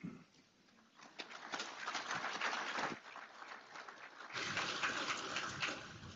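Faint, light applause from a small audience, starting about a second in.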